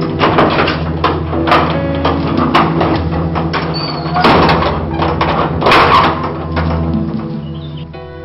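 Film soundtrack music with held chords, overlaid by a series of irregular sharp knocks or thuds, the loudest about four and six seconds in.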